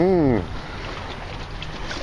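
A brief male voice sound at the very start, then a steady hiss of wind on the microphone and water moving in the shallows.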